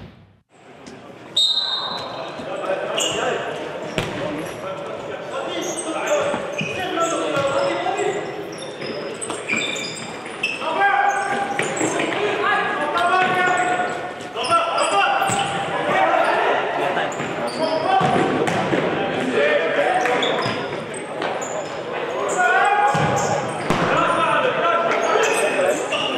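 Futsal play on a sports-hall wooden floor, starting about a second in: many short, high shoe squeaks, thuds of the ball being kicked and players' shouts, echoing in the large hall.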